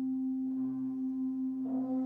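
Concert wind band holding a sustained chord: a strong steady middle note with a lower note held beneath it, and more notes coming in near the end.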